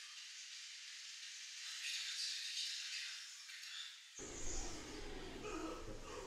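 Faint, thin-sounding soundtrack of an anime episode with only its high end audible; about four seconds in it switches abruptly to a fuller sound with a low rumble.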